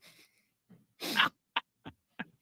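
A man laughing: a breathy burst about a second in, then a few short chuckles.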